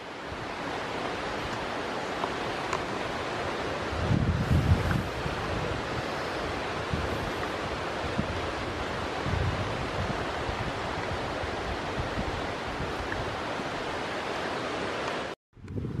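A steady, even outdoor rushing noise with no voice over it, with low rumbles about four seconds in and again near nine seconds. It cuts off suddenly just before the end.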